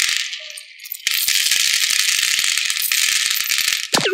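Small round beads pouring from a glass jar into a plastic tray, a dense rattling clatter of many tiny clicks. It eases off briefly about half a second in, then a second, steady pour runs from about a second in until the jar empties near the end.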